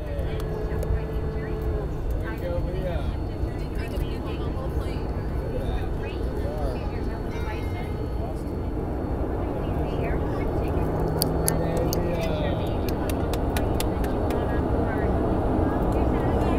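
Steady engine and air noise inside an airliner cabin on the ground, growing a little louder in the second half, with voices and a few clicks over it.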